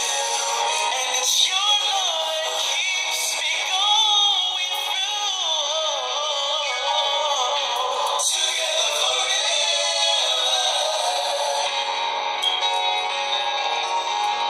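A man singing a love song in long, wavering notes. The sound is thin and tinny, with no bass, as if played through a small speaker.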